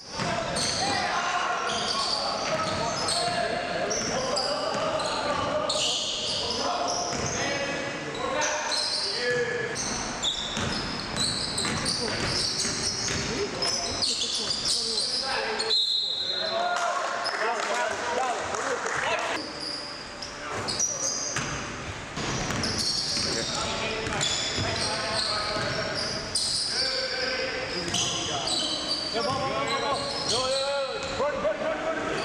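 Live indoor basketball game sound echoing in a gym: a basketball bouncing, many short high squeaks of sneakers on the wooden court, and players' voices calling out.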